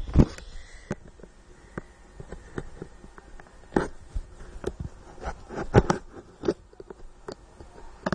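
Irregular knocks, clicks and crackles of a cardboard box and its plastic wrapping being handled and opened.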